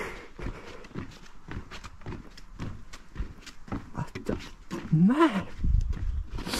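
Footsteps of a person walking outdoors: a run of short, irregular steps, with a man's voiced "ah" and a laugh near the end.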